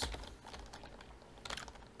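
Computer keyboard keystrokes typing code: a couple of taps at the start, a quiet pause, then a short run of taps about one and a half seconds in.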